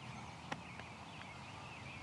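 Faint outdoor quiet with small birds chirping in the background and one sharp click about half a second in.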